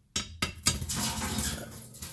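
Metal fireplace parts clinking and rattling under a hand working inside the firebox: three sharp clinks, then a scraping rattle.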